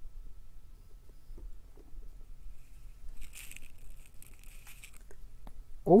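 Faint handling sounds of breadboard wiring: a few small clicks as a jumper wire is pushed in and hands move about, with a brief soft rustle around three to five seconds in.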